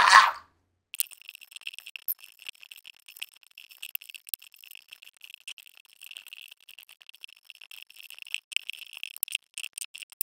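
Loose plastic Lego bricks clicking and rattling against each other and the table as a pile is sorted by hand. It is a thin, high-pitched clatter of many quick clicks that starts about a second in.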